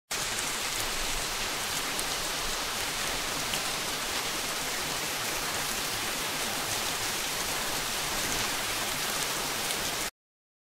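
AI-generated rain from the AudioX text-to-audio model: a steady, even hiss of rainfall with a few faint clicks, starting and stopping abruptly.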